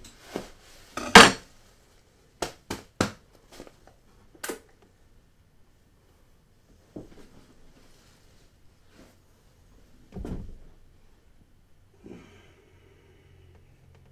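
Scattered knocks and clatters of objects being handled on a wooden desk, loudest about a second in, then a few faint taps and a low thud about ten seconds in.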